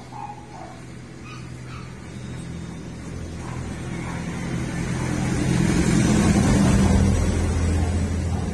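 A motor vehicle passing on the road: its engine hum grows louder over several seconds, peaks about six to seven seconds in, then starts to fade.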